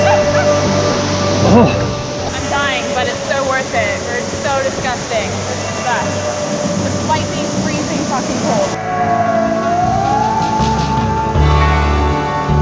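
Background music with a long held note over steady bass. Splashing water and people's voices sit under it until about three-quarters of the way through, when they cut off and only the music continues.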